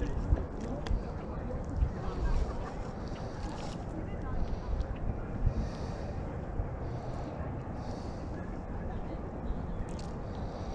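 Wind buffeting the microphone, a steady low rumble. Over it come short high chirps repeating about once a second, and a few sharp clicks in the first second.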